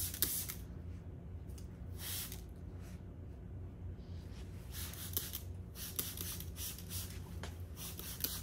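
Fine-mist spray bottle of rust-patina activator spritzing onto wet iron paint in a series of short sprays, several in quick succession around the middle. This starts the chemical reaction that turns the paint to rust.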